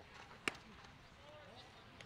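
A single sharp pop about half a second in: a pitched baseball smacking into the catcher's mitt, over faint ballpark crowd murmur.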